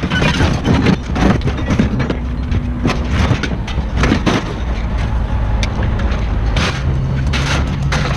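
Scrap metal clattering and banging as pieces are pulled and dropped out of a pickup bed, in irregular knocks, over a steady low engine rumble.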